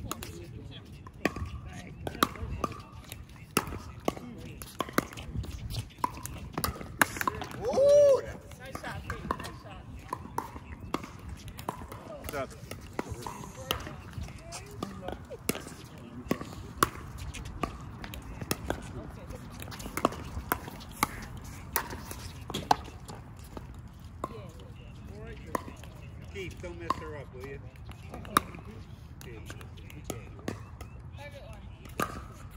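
Pickleball paddles hitting the ball: sharp pocks at irregular intervals, from this court and the courts around it, over background voices. A brief, loud voice stands out about eight seconds in.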